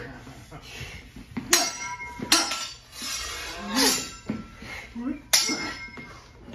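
Steel broadswords clashing blade on blade in a stage-combat fight: three sharp strikes, about a second and a half in, just after two seconds and about five seconds in, each leaving the blades ringing briefly. A short vocal shout from one of the fighters falls between the second and third clash.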